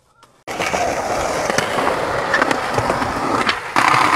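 Skateboard wheels rolling on concrete, starting suddenly about half a second in, with scattered clicks and knocks from the board. A louder scraping burst comes near the end.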